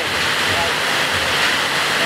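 Steady rushing of water from a FlowRider sheet-wave machine, its pumped water pouring up and over the padded slope.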